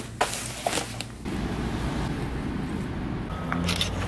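Rustling and clicking as a DSLR camera and its strap are packed into a fabric camera bag. A little over a second in, this gives way to a steady low rumble of background noise.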